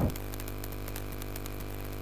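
Steady low background drone: a constant hum with sustained tones that neither rise nor fall, and a faint hiss.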